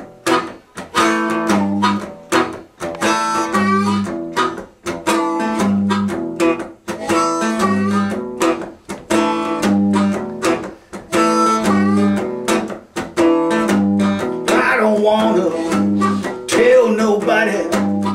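Acoustic guitar playing a repeating blues riff, plucked bass notes and strummed chords about once a second. A harmonica joins about three-quarters of the way in, playing notes that bend in pitch.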